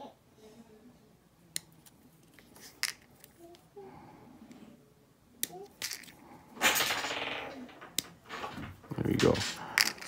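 Hobby flush cutters snipping grey plastic miniature parts off the sprue: about five sharp clicks spread out one by one. A louder stretch of background voice comes about two-thirds of the way in.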